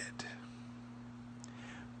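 Faint steady low hum with light hiss during a pause in speech, and a soft breath about three-quarters of the way through.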